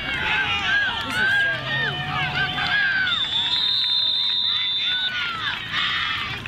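Football spectators yelling and cheering, many voices at once, with a steady high whistle blast about three seconds in held for two seconds: a referee's whistle stopping the play.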